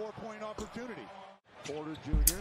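Basketball broadcast audio from the game highlights, quieter than the streamer's own talk: a commentator speaking over the arena sound. It cuts out briefly about one and a half seconds in at an edit, then the voice resumes.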